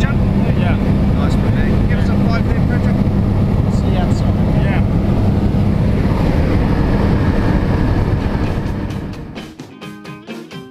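Skydiving plane's engine and propeller drone, heard from inside the cabin: loud and steady with a low hum. About nine seconds in it fades out and guitar music comes in.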